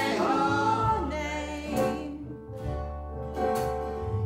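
Live acoustic folk song: a woman sings the lead line over violins and other strings, with steady bass notes underneath.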